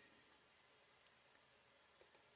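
Near silence, broken by a faint computer mouse click about halfway through and another click right at the end.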